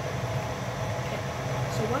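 A large pot of pasta water at a hard rolling boil, a steady low rumble and bubbling. A girl's voice comes in briefly at the very end.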